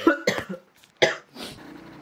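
Coughing from a person ill with COVID-19: a short bout of coughs at the start, then a single sharp cough about a second in.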